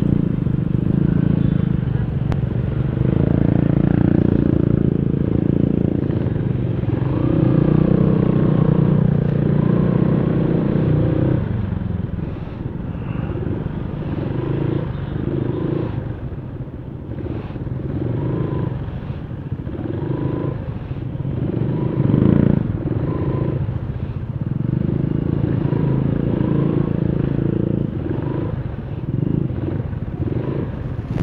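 Motorcycle engine running while the bike rides slowly among other motorcycles, its note rising and falling with the throttle. It is louder for roughly the first ten seconds, then settles lower.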